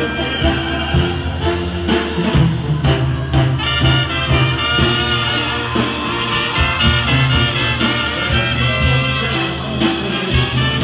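A Sinaloan banda's brass section, trumpets and trombones, playing an instrumental passage at full volume over a low bass line and a steady beat.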